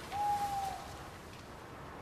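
A single short hoot: one clear, steady note about half a second long, sounding just after the start and dipping slightly as it fades.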